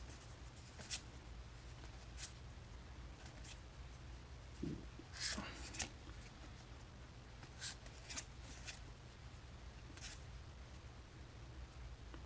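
Foil trading cards sliding against each other as they are flipped through by hand, a soft, short swish every second or two, over a faint steady hum.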